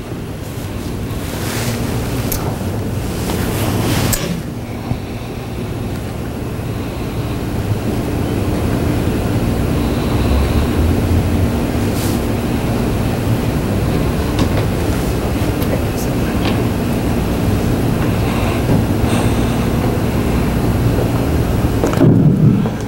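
Steady low rumbling noise with a faint steady hum under it, and a few light clicks.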